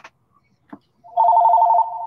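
Telephone ringing: an electronic warbling ring of two rapidly alternating tones that starts about a second in and drops in level near the end while still sounding.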